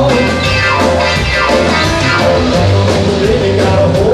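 Live rock and roll band playing: keyboard piano, electric guitar, bass and drums over a steady beat.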